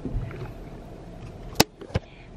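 Handling noise on a handheld camera: a low rumble at the start, then a sharp click about one and a half seconds in and a second, softer click near the end.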